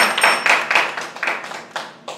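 A small audience applauding, the clapping thinning to a few scattered claps and dying away near the end.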